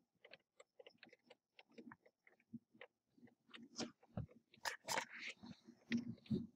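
Faint, irregular ticks and taps of water drops hitting window glass as the rain tails off, sparse at first and picking up a little from about three and a half seconds in.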